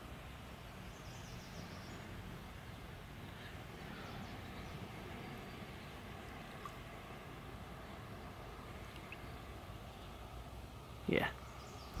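Faint, steady outdoor background noise with a low rumble and no distinct event, until a brief spoken word near the end.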